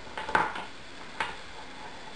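Two light clicks as a wire-strung necklace of baked flour-dough letters and beads is handled on a wooden table. The first, about a third of a second in, is the louder; the second comes roughly a second later.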